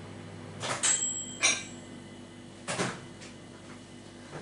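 A steady hum from an appliance heating milk cuts off under a second in. A few sharp clicks and knocks follow, one with a brief high ringing tone, and another knock comes near three seconds.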